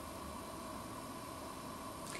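Faint steady hiss of room tone and recording noise, with no distinct sound events.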